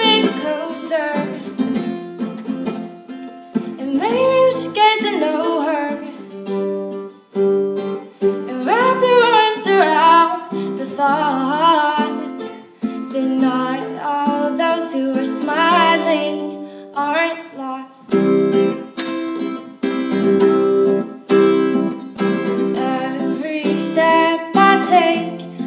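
A woman singing a slow song in phrases with short breaks, accompanying herself on a strummed Yamaha acoustic guitar fitted with a capo.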